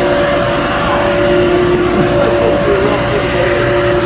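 Steady drone of running machinery, with two held tones over a constant noise.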